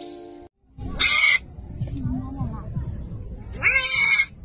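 Tiger cub snarling twice, loud and harsh, about a second in and again near the end, with lower growling between the snarls.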